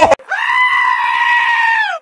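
A goat letting out one long, human-like scream that rises, holds steady for over a second and drops away at the end. A split second of loud shouting cuts off right at the start.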